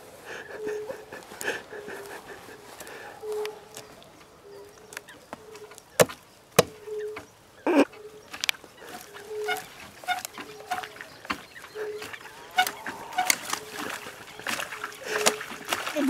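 A few sharp wooden knocks and cracks as a man stamps and bounces on a burnt, fallen tree trunk, the clearest a little past the middle. Behind them a short, low animal call repeats about once a second.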